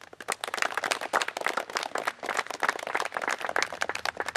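Audience applause: many people clapping, breaking out all at once.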